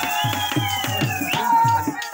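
Live folk music: a drum beats steadily about four times a second under long held melodic tones that slide slowly in pitch.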